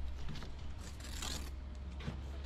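Steel trowel scraping and spreading mortar on concrete blocks, with a brighter scrape about a second in, over a steady low rumble.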